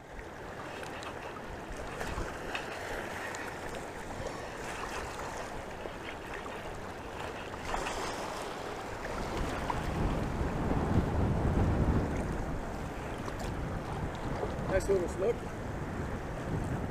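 Wind buffeting the microphone over choppy water lapping around a wader, with a stronger gust rumbling about ten seconds in. A voice calls out faintly near the end.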